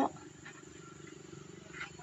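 A faint, steady low hum during a pause between spoken counts.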